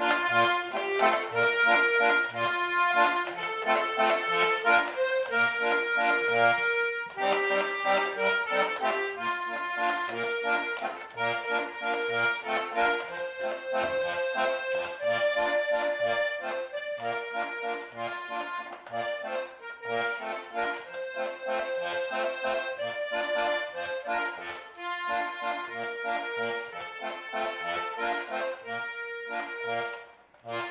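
Small button accordion played solo by ear: a tune of melody notes over evenly spaced bass notes on the beat.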